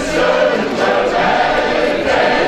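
A group of voices singing together in held, choir-like notes.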